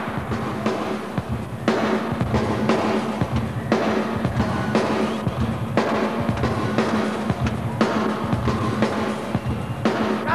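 Live rock band playing an instrumental passage, the drum kit to the fore, with a strong accented hit about once a second over a steady bass.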